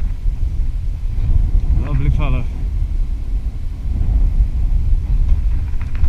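Wind buffeting a body-worn camera's microphone, a steady low rumble. About two seconds in there is a brief, pitch-bending vocal sound from a person.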